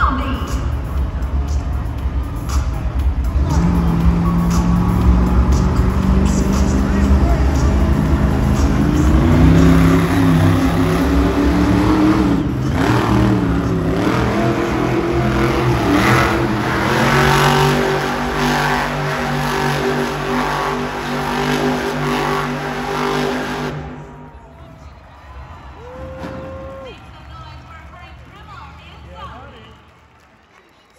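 Monster truck engine revving hard and unevenly as the truck spins donuts in the dirt, its pitch climbing and dipping over and over. The loud engine sound stops abruptly about three-quarters of the way through, leaving quieter arena sound.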